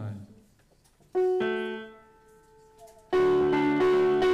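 Piano chord rung once about a second in and left to fade, then the band comes in loudly about three seconds in with piano and guitars, starting a carol.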